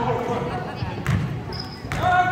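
Basketball dribbled on a hardwood gym floor: a few sharp thuds roughly a second apart, over spectators chatting.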